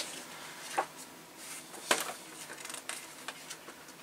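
Quiet room with light handling noises at a workbench: two short clicks, about a second in and again about two seconds in, and a few fainter ticks and rustles.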